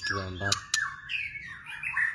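Young cage birds chirping, a run of high calls that rise and fall from about half a second in, with two sharp clicks just before. A man's voice finishes speaking at the very start.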